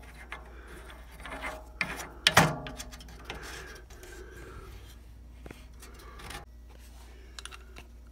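Close rubbing and scraping from hands handling a faucet fitting as it is screwed on, with a few light clicks and knocks, the sharpest about two and a half seconds in.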